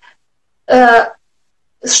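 A woman's single short voiced sound, about half a second long, in a pause between phrases of her speech.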